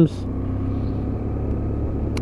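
BMW F800's parallel-twin engine running steadily while riding in traffic, with low rumble from wind and road on the camera microphone.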